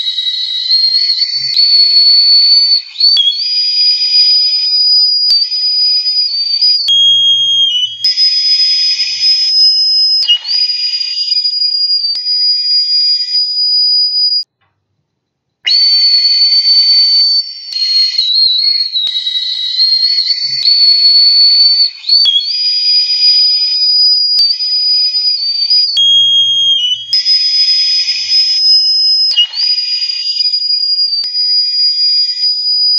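Recorder played with very high, shrill, breathy held notes and small pitch slides. A passage of about fourteen seconds breaks off into a second of silence, then plays again.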